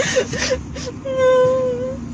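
A person's voice: a few short vocal sounds, then one drawn-out, steady, high-pitched whine held for about a second in the second half.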